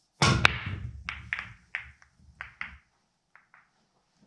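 Pool break: the cue ball cracks into the racked billiard balls about a quarter second in, followed by a string of sharper and fainter clicks as the scattering balls knock into one another. The clicks thin out and die away after about three seconds.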